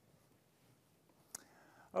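Quiet room tone, then about two-thirds of the way in a single sharp click followed by a man's soft in-breath, just before he starts to speak.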